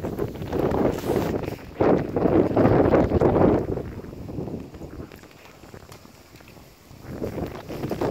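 Golden retriever rolling and wriggling on its back on a rough concrete lane: its fur and body scrape and rustle against the gritty surface for a few seconds, then die down, with a shorter burst again near the end.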